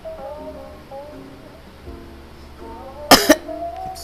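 Soft background music with sustained pitched notes, broken about three seconds in by a loud, sharp cough from a woman, two quick bursts close together.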